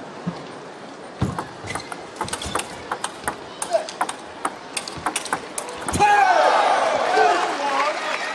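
Table tennis rally: the ball's sharp clicks off paddles and table in a quick, uneven series for several seconds. About six seconds in, as the point ends, voices break out shouting and cheering.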